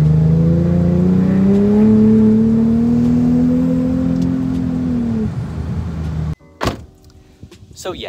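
Infiniti G37's 3.7-litre V6, modified with aftermarket intakes, heard from inside the cabin while accelerating in gear. The pitch rises steadily for about five seconds, then eases off. Near the end the sound cuts abruptly to a much quieter background with a single click.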